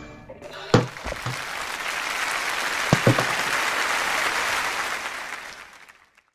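Applause that builds up about a second in, holds steady, then fades out near the end, with a few sharp knocks among it.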